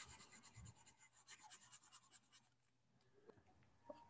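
Near silence, with faint scratching from a stylus on a tablet in the first two seconds.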